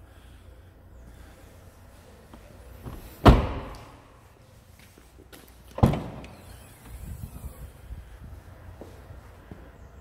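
Renault Captur car doors being shut: one solid slam about three seconds in and a second, slightly lighter slam about two and a half seconds later.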